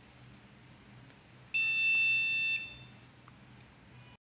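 Dog training collar receiver giving one steady, high-pitched electronic beep about a second long, starting about a second and a half in: the confirmation beep that it has paired with its remote.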